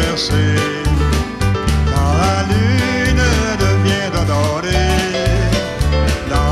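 A country band plays live: acoustic guitar, bass moving between notes, and steady drum beats, with a man singing over them.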